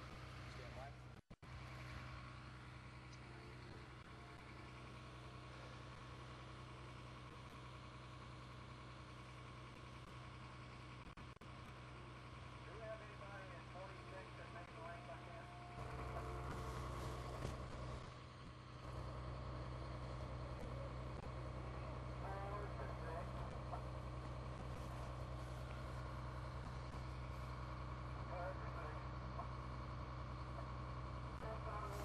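A steady low mechanical hum that grows louder a little past halfway, with faint distant voices now and then.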